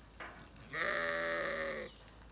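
Zwartbles sheep bleating once, a single call of a little over a second starting just under a second in.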